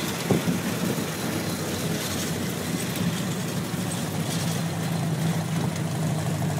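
Model T speedster's four-cylinder flathead engine running steadily, heard from the car's open seat.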